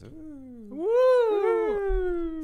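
A man's long drawn-out vocal whoop: one held voice that dips low, swoops up about a second in, then slides slowly down in pitch.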